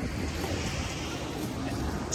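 Wind buffeting the microphone: a steady low rumbling hiss over the background noise of a city street.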